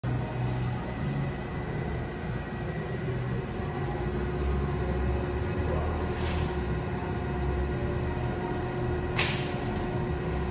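Rapid 300 plastics granulator running empty on a test run: a steady motor and rotor drone with a low rumble and an even hum. A fainter sharp metallic sound comes about six seconds in, and a louder sharp clink just after nine seconds.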